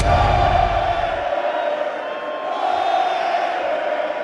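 Large stadium crowd cheering and chanting in a steady wash of noise, with a low music bass under it that stops about a second in.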